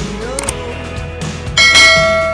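Background music, with a click about half a second in and then a loud bell chime about one and a half seconds in that rings on and fades. It is the notification-bell sound effect of a subscribe animation.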